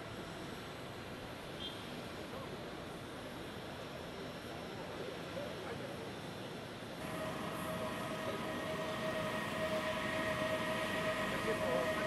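Outdoor background noise with faint voices; about seven seconds in, a steady mechanical whine of several held tones starts and slowly grows louder.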